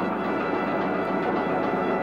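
Contemporary orchestral music, a dense, steady texture of many held notes sounding together.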